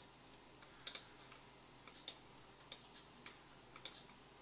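Faint, sharp clicks of a computer mouse, about five of them spaced irregularly, over a low steady hiss.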